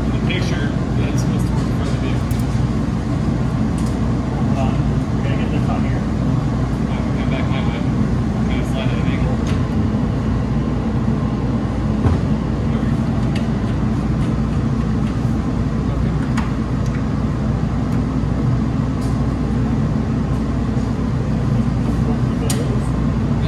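A steady low hum runs throughout, with scattered light clicks and taps from the metal bows of a truck-bed soft top being handled and fitted.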